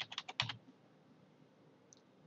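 Computer keyboard being typed on: a quick run of keystrokes in the first half-second as a short word is entered, then quiet with one faint click near the end.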